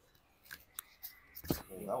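A loud crack from a joint being manipulated, one sharp crack about one and a half seconds in, after a few lighter clicks.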